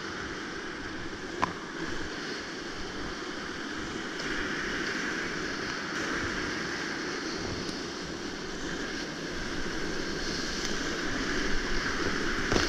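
Whitewater rapids of a river at high flow, about 4000 cfs, rushing and splashing around a kayak, with wind and water noise on the camera's microphone. A single sharp knock about a second and a half in.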